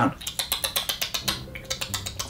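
A person imitating a mouse gnawing through a rope with the mouth: a quick run of sharp clicks of the teeth, about ten a second.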